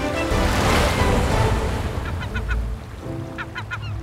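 Background music with a wave washing about a second in, then seabirds giving short, honking calls in two quick groups, near the middle and near the end.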